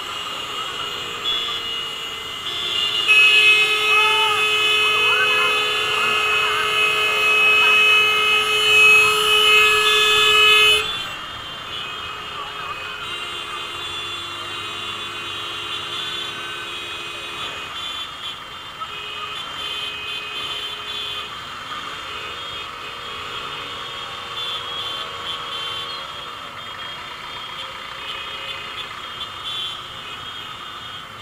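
A vehicle horn held for about eight seconds over street traffic, cutting off abruptly about eleven seconds in. Traffic noise follows, with further shorter horn tones.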